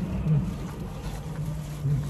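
Low steady rumble inside a car's cabin, with short low hums from a person, one about a third of a second in and another near the end.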